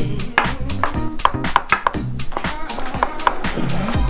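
Chef's knife chopping tomatoes on a wooden cutting board: a run of quick, irregular knocks of the blade on the wood. Background music with a steady bass line plays underneath.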